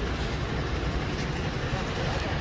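Busy city street: a steady low rumble of road traffic, buses and cars, with people's voices mixed in.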